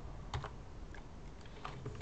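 Computer keyboard being typed on: a few separate keystrokes while a line of code is entered, the clearest about a third of a second in and again near the end.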